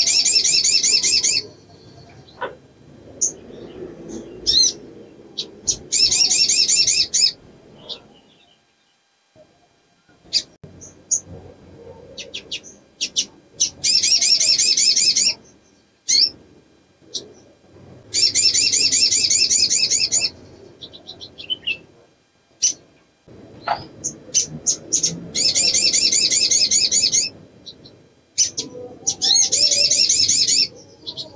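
A female olive-backed sunbird (sogok ontong) calling in breeding condition, the call that draws males. She gives rapid high trills of about one and a half to two seconds every four to seven seconds, with short sharp chips between them.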